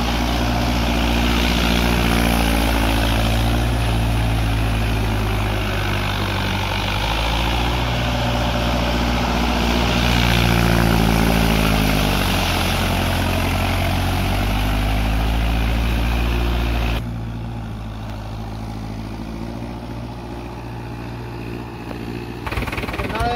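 Tractor engine running under load as the tractor's iron cage wheels churn through a flooded paddy field, puddling the mud. The engine pitch sags briefly about twelve seconds in, and about seventeen seconds in the sound drops suddenly to a quieter, more distant engine.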